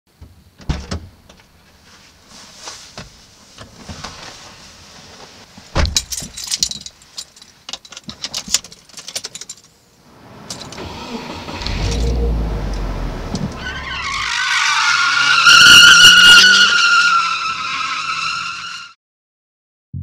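Car sounds: rattling clicks like jangling keys, then a low engine rumble about halfway through, building into a long, loud, wavering tyre squeal that cuts off suddenly near the end.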